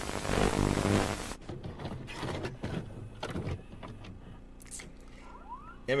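Loud, harsh video static with a low buzzing hum under it, which cuts off suddenly about a second and a half in; only faint clicks and room sounds follow. It is harsh enough to make the listener's teeth grind.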